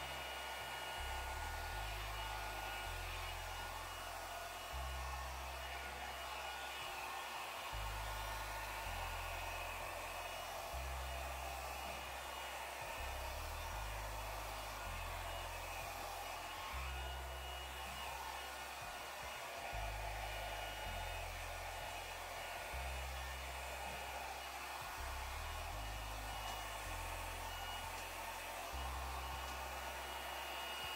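Small handheld hair dryer running steadily, its air rush carrying a thin motor whine, as it blows wet acrylic paint across a canvas.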